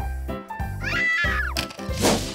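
A cartoon cat's meow about a second in, over background music with a steady beat.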